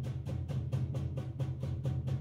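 Percussion ensemble playing drums in a fast, even pulse of about eight strokes a second, over a steady low drum resonance.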